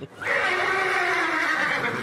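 A horse whinnying: one long call of about a second and a half.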